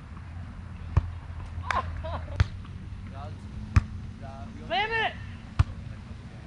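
A volleyball being struck by players' hands and forearms during a rally: four sharp smacks roughly a second and a half apart, with players calling out between hits.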